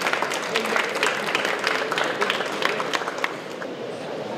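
Small audience applauding, the clapping thinning out and stopping a little after three seconds in.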